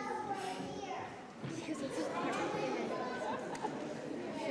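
Indistinct chatter of many voices, children's among them, in a large hall.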